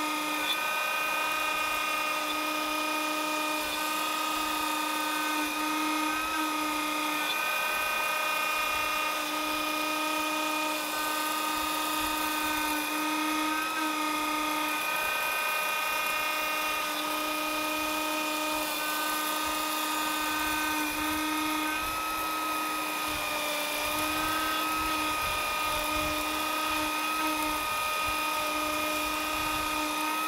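Fox Alien 65 mm trim router on a CNC machine running at high speed while milling a pocket in MDF: a steady high whine over cutting noise. A lower tone in the whine drops out and returns every second or two as the bit works through the board.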